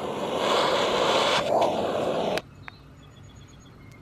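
Butane jet torch lighter's flame hissing steadily against an aluminium can, then cutting off suddenly a little past halfway.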